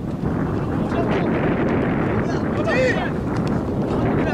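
Wind buffeting the microphone throughout, with players' voices calling on a football pitch; one shouted call stands out about three seconds in.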